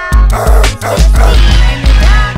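Hip hop track with a heavy bass beat about twice a second, with dog barks over it.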